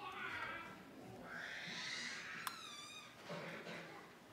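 A young child's high-pitched squealing vocalizations: a few short, wavering calls, with a single sharp click about two and a half seconds in.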